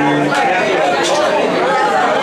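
Live pub jam band holding low sustained notes that break off about a third of a second in, with voices over the music.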